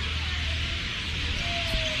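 Outdoor ambience: a constant dense high-pitched chatter, typical of many birds roosting in a tree, over a steady low hum, with a faint drawn-out tone near the end.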